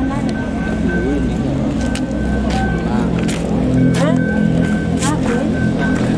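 People talking with music playing, over a steady low hum. A thin high steady tone breaks off and comes back several times.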